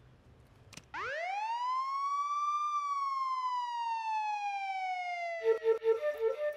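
A single siren wail: the pitch climbs steeply for about two seconds, then sinks slowly over the next three. Music with a steady held note comes in near the end.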